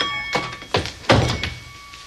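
Café entrance door being pushed open and banged shut: a few knocks and one loud thud about a second in. A small bell rings faintly at the start and again near the end.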